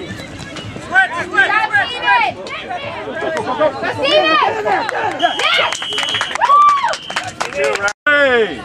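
Sideline spectators shouting and cheering at a youth flag football game, several voices overlapping, with no clear words. A steady high tone sounds about five seconds in and lasts about a second.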